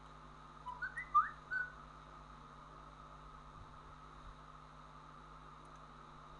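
A brief whistled phrase of about five short notes, some gliding upward, about a second in, over a faint steady hum and hiss.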